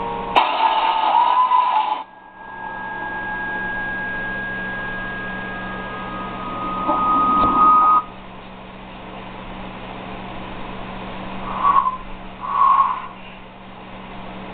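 Film trailer soundtrack: held, steady tones of a music score build to a loud rumbling swell that cuts off suddenly about eight seconds in. After that there is a quieter hiss with two short tonal sounds near the end.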